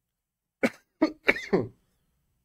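A man coughing: four short coughs in quick succession starting about half a second in, the last one trailing off.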